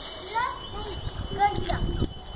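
A young child's short, rising vocal sounds without clear words, twice, over a low rumble.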